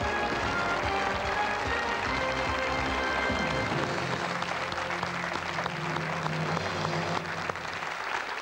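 Studio audience applauding over a game-show music cue of held, stepping chords, which moves into lower notes partway through.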